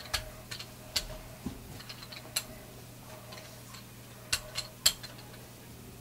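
A rubber brayer rolled back and forth through wet acrylic paint on a gel printing plate, giving sharp clicks and ticks at irregular intervals, with a quick run of three about four to five seconds in.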